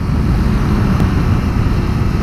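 Suzuki GSX-R125's single-cylinder engine running steadily at cruising speed, mixed with constant wind and road noise.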